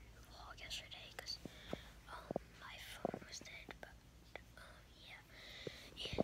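A boy whispering faintly close to the microphone, with a few soft mouth clicks.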